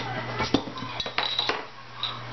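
Metal bottle opener prying the crown cap off a glass beer bottle: several sharp metallic clicks and clinks, closer together after the first second, with a brief high ring.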